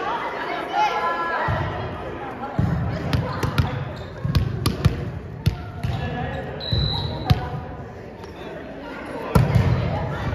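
A volleyball bounced several times on a wooden gym floor between rallies, with sharp sneaker squeaks and players' voices in an echoing sports hall. A short referee's whistle blast comes about seven seconds in, and the serve is hit with a loud smack near the end.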